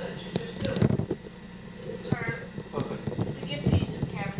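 Indistinct talking from people in the room, with several short, sharp knocks, the loudest just before a second in and again near the end.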